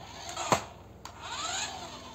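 Small electric motor of a remote-control toy car whirring, its pitch rising and falling as the car speeds up and slows, with one sharp click about half a second in.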